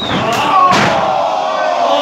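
Two sharp smacks of a wrestler's strikes landing in the ring, about half a second apart. They are followed by a long shout of voices that slowly falls in pitch.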